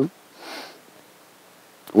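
A man's short sniff about half a second in, between stretches of his speech, with quiet room tone after it until he speaks again near the end.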